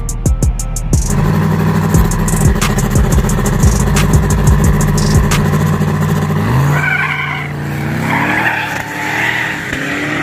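Two turbocharged street-race cars, an LM7 5.3 L turbo Firebird and a twin-turbo Mustang, holding revs at the start line with rapid sharp crackles from the exhausts. Their engines climb in pitch from about two-thirds of the way in, dip briefly, then rise again as the cars launch near the end.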